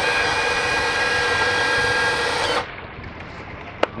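An outboard motor's electric power tilt-and-trim pump running for under three seconds as it lowers the motor onto braces over the trim rams. It is a steady whine that holds its pitch and cuts off sharply, with a single click shortly before the end.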